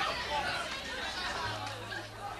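Indistinct chatter of several voices, with a low steady hum joining about one and a half seconds in.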